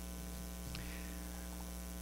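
Steady electrical mains hum with a stack of overtones, picked up in the recording chain.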